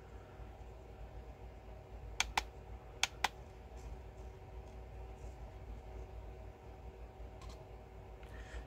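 Four light clicks, in two quick pairs about a second apart, as a Radiomaster MT12 radio transmitter's controls are pressed to step through a menu setting. A faint steady hum runs under them.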